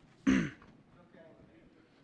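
A person clears their throat once, a short voiced sound with falling pitch, just after the start.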